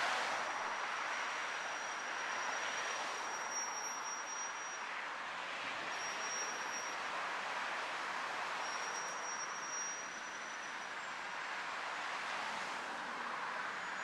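Steady street traffic noise from passing cars, with a thin high tone that comes and goes three times.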